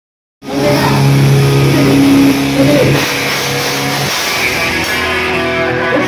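Live rock band playing loudly on electric guitar, bass and drums, cutting in abruptly about half a second in. Held chords ring out until about four seconds in, when the music changes to a thinner passage.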